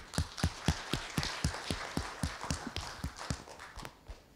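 Audience applauding: a few close hands clapping about four times a second over the clatter of many others, dying away near the end.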